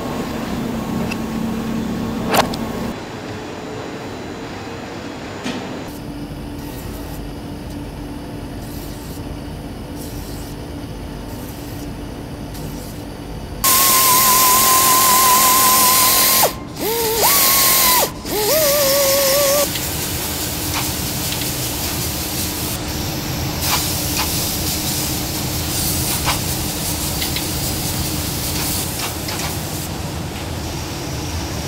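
Denim workshop machinery running, with three loud bursts of compressed-air hissing about halfway through. The hissing carries a wavering whistle and is typical of a pneumatic spray gun used to spray jeans.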